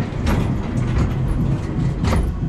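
Low rumble of wind buffeting the microphone as it moves with a giant swing, with a sharp knock about a third of a second in.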